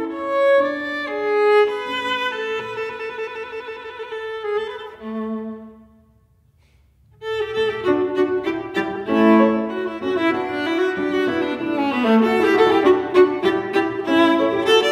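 Solo viola playing a classical piece, sustained bowed notes with vibrato. About five seconds in the phrase ends on a low note that fades into a brief pause, and about a second later a new, busier passage of quicker notes begins.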